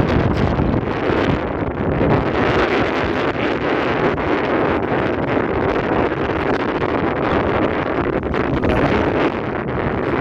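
Wind blowing hard across a phone's microphone: a loud, steady rushing noise heaviest in the low end.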